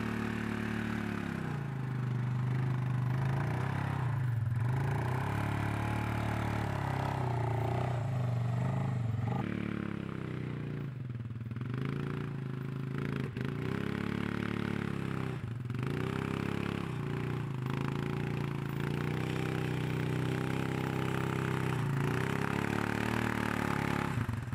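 ATV engine running under load while towing a round hay bale on a chain. The engine note repeatedly dips and climbs again as the throttle is eased off and opened.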